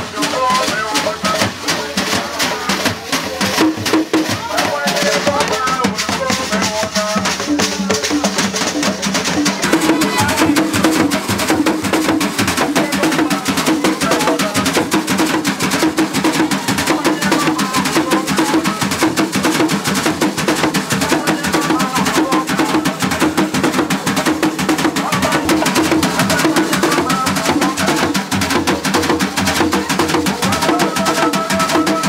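Tarumbeta dance music, a fast, steady drum-and-percussion rhythm with voices over it.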